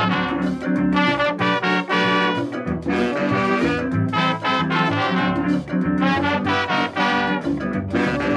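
Calypso band playing an instrumental break between sung verses, with brass horns carrying the melody over a bass line and a steady dance rhythm.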